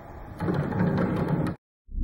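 Handling noise from a homemade clear-acrylic triple pendulum as its arm is lifted by hand on its bearing pivots. It starts about half a second in and cuts off abruptly about a second and a half in. A loud low hum starts right at the end.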